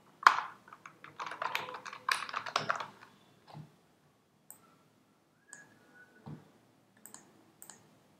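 Computer keyboard typing: a quick run of keystrokes in the first three seconds as a folder name is typed, then a few scattered single clicks.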